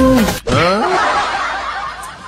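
A sung note slides down in pitch and breaks off. It is followed by laughter that fades away.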